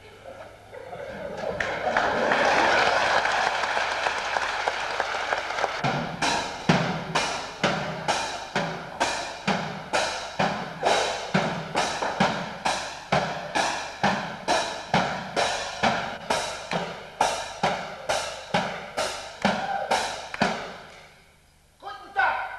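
Applause for about four seconds, then a steady rhythmic beat of sharp strikes, about two a second, which stops shortly before the end.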